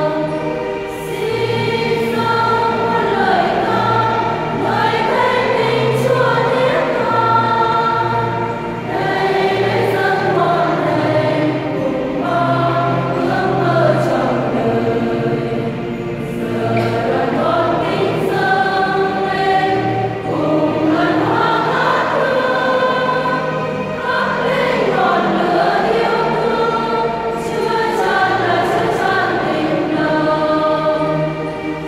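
A mainly female church choir singing a hymn in full voice, in continuous phrases a few seconds long, over sustained low keyboard notes.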